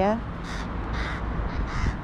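A crow cawing three times in short, hoarse calls, an alarm call raised at something the birds did not like.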